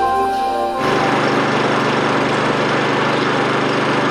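Background music cuts off about a second in, giving way to a steady mechanical drone of a small engine running, with a broad hiss over it.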